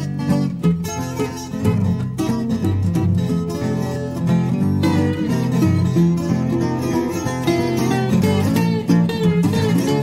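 Hawaiian slack key acoustic guitar playing an instrumental passage: fingerpicked melody notes over a steady plucked bass.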